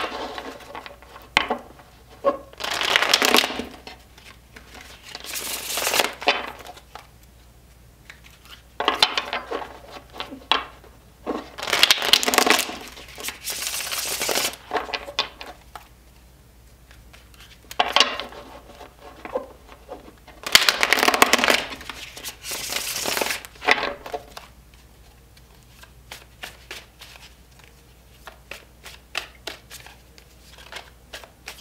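A deck of tarot cards being shuffled by hand in several bursts of a few seconds each, the cards flicking against one another. Quieter, scattered card clicks follow near the end.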